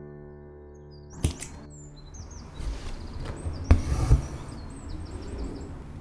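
Soft piano music that stops about a second in, then a sharp snip of small embroidery scissors cutting the floss, followed by handling noise on the fabric and hoop with two knocks near the middle.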